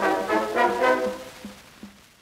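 Closing instrumental notes with a brassy tone at the end of a circa-1908 Indestructible cylinder recording, a short run of notes that fades out about a second and a half in, followed by a few faint clicks.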